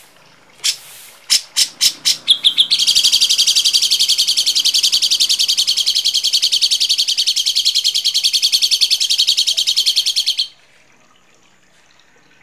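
A songbird's harsh call: a few separate rasping notes that quickly speed up into a rapid, high, rattling trill, held for about eight seconds, that stops abruptly near the end.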